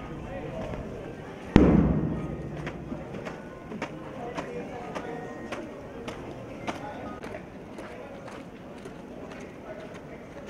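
A loud thud with a short ringing tail about one and a half seconds in, then sharp taps about twice a second keeping march time while a student marches forward.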